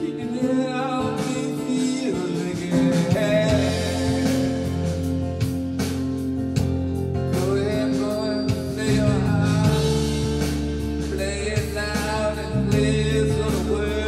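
Blues-style music: a harmonica played through a cupped handheld microphone, its notes bending and wavering, over a backing of guitar and bass that changes notes a few times.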